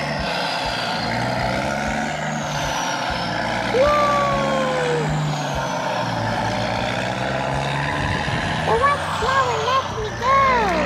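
Steady truck-engine drone running throughout. About four seconds in a voice makes one long falling 'ooh', and near the end there are several short rising-and-falling vocal sounds.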